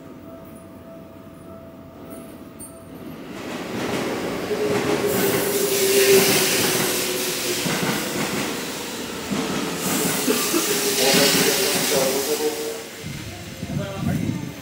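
Seibu 6000 series electric train running, heard from inside the car. After about three quiet seconds the running noise rises, with a steady whine under a loud rushing noise. The noise dips near the end.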